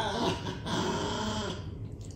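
Pomeranian vocalising in drawn-out, talk-like sounds that are rendered as 'karē' ('curry'), fading out about a second and a half in.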